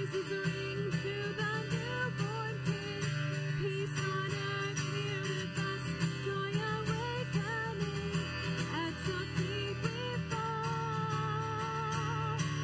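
A woman singing while strumming an acoustic guitar.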